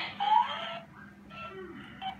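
Talking cat plush toy playing back a short phrase in a squeaky, sped-up voice, rising in pitch, near the start. It echoes a human voice heard a moment earlier.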